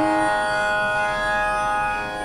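A sustained instrumental drone in the devotional song's accompaniment: several notes with bright overtones, held steady without change in pitch.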